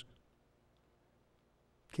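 Near silence: a pause in a man's speech, with the tail of one phrase at the start and the next phrase beginning near the end.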